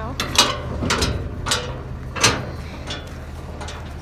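A metal gate latch being worked by hand: a run of sharp metallic clacks and rattles, the loudest about two seconds in, over a steady low hum.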